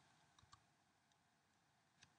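Near silence, broken by two faint short clicks about half a second in and a tinier one near the end.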